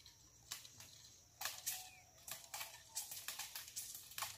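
Faint, irregular crackling of footsteps on dry leaf litter, a few light crunches a second, growing more frequent in the second half.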